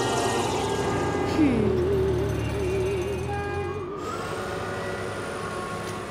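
Cartoon soundtrack: music giving way to a warbling, wavering sound effect with a short falling glide over a low rumble, as a dream vision dissolves in a ripple. About four seconds in it drops to a quieter steady hum.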